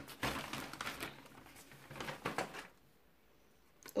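Parcel packaging rustling and crinkling as it is handled, in irregular bursts that stop about two and a half seconds in.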